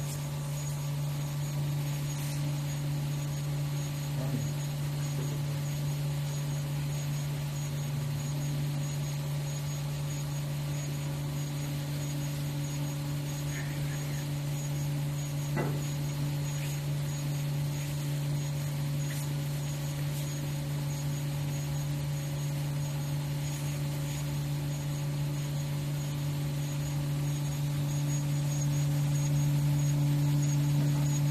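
Single-pass inkjet label printer and its conveyor belt running continuously: a steady low machine hum, with a faint, rapidly pulsing high tone above it. It grows a little louder near the end.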